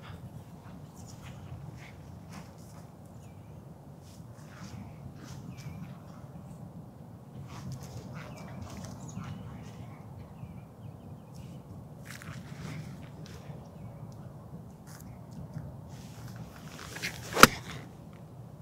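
Faint outdoor background with light rustling, then near the end a single sharp crack of an eight iron striking a golf ball off fairway turf on a short bump-and-run approach.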